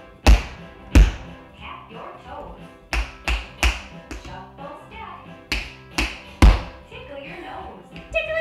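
Tap shoes striking a hardwood floor in sharp, uneven steps and hops: about eight loud strikes, two near the start, three close together around the middle and three more later. Background music with faint singing plays under the strikes.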